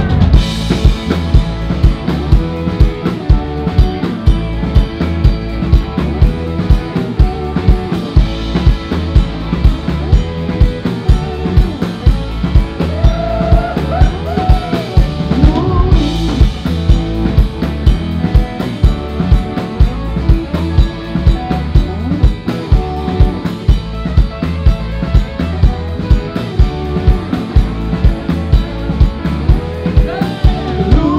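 Rock and roll band playing, with the drum kit's bass drum and snare keeping a steady beat under electric guitars and bass guitar.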